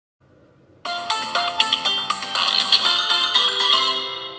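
Short music jingle from a Nickelodeon logo bumper: a quick run of short pitched notes starting about a second in and beginning to fade near the end.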